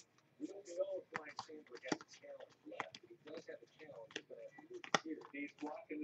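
Trading cards being flipped through by hand, with a run of light clicks and snaps as the cards slide off the stack, the sharpest about five seconds in. A faint voice is talking under it.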